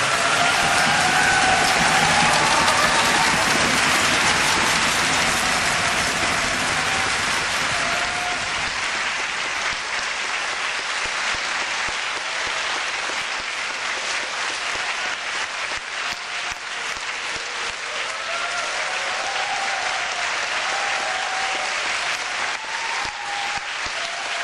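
Concert audience applauding, loudest in the first few seconds and easing slightly, with a few voices calling out.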